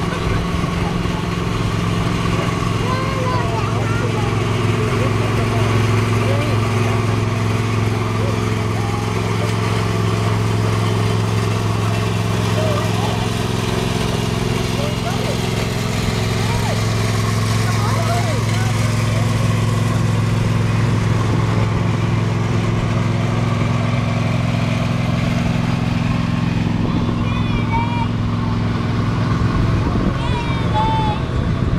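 Engines of slow-moving parade vehicles running at low, steady revs: one even engine drone holds almost throughout and fades out near the end.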